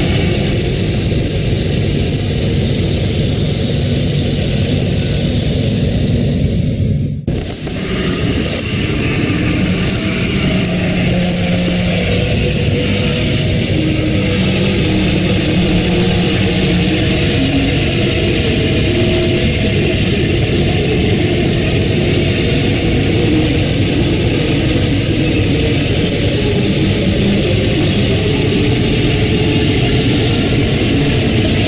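A loud, continuous droning rumble with wavering low tones running through it, of a kind reported as an unexplained 'strange sound' heard over a city; it dips out briefly about seven seconds in.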